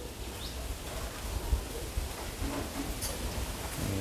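Faint background noise with an unsteady low rumble and one light click about three seconds in.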